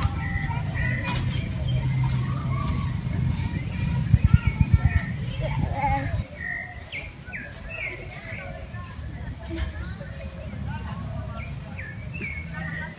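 Outdoor ambience with birds chirping. A low wind rumble on the microphone fills the first half, swells around four to five seconds in, and drops off suddenly about six seconds in.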